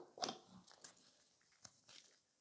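Near silence, with a few faint short clicks: the clearest about a quarter second in, then softer ticks over the next second and a half.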